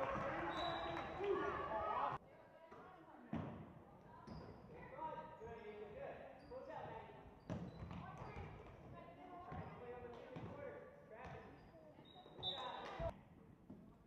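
Basketball game in a gym: the ball bouncing on the hardwood floor among players' and spectators' voices, with a short referee's whistle near the end. Loud crowd noise at the start cuts off suddenly about two seconds in.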